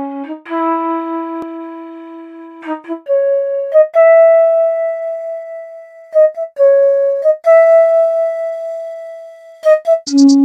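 Sampled flute melody playing alone, long held notes joined by quick short grace notes, with no drums.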